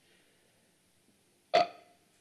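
Near silence, then about one and a half seconds in a man gives a single short hesitant 'uh' over a remote video link before answering.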